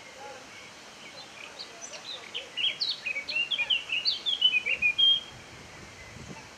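A small songbird singing a fast run of short, high chirps and whistled notes, starting about a second and a half in and lasting about three and a half seconds.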